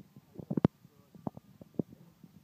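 Irregular short knocks and rustles, the loudest a little over half a second in, with a few smaller ones after.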